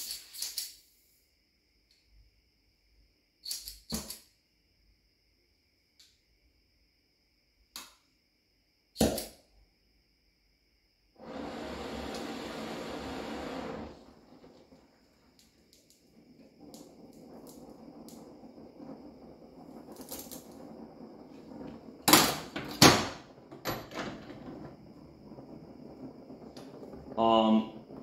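Oxyfuel torch being readied and lit to heat a steel cutter for hardening: a few scattered clicks and knocks, a hiss of gas lasting about three seconds, then the steady rush of the burning flame, with a couple of sharp clicks partway through.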